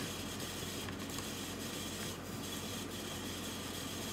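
Steady room noise: an even hiss with a faint low hum underneath, with no distinct events.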